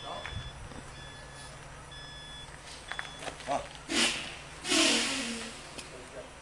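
An electronic beep repeating about once a second in the background, stopping a little over halfway. Then come two loud, breathy bursts of voice close together.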